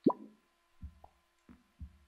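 A short rising 'bloop' from Open Brush's interface as a menu button is pressed, followed by three soft low thumps spread over the next second or so.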